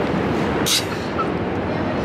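Loud, steady city vehicle noise, with a short high hiss about two-thirds of a second in.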